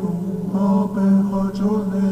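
Background music: a voice chanting in long held notes, with short breaks between phrases, over a steady low drone.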